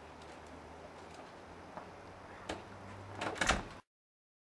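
An entrance door of a block of flats being opened and shut: a sharp click about two and a half seconds in, then a louder clatter of knocks as it closes near the end, over a faint steady hum. The sound cuts off suddenly just before the end.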